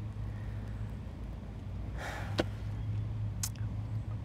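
A single breath drawn on a joint about two seconds in, followed by a small click and another faint click a second later, over a steady low hum.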